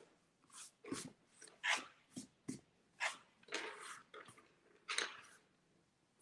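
Eraser rubbing pencil lines off drawing paper in about ten short, uneven scrubbing strokes.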